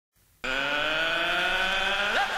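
Opening of a backing music track: a buzzy sustained synthesizer tone that starts about half a second in and slowly rises in pitch.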